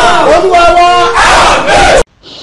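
A man shouting loudly and at a high pitch in fervent prayer, his cries rising and falling; it cuts off suddenly at the end.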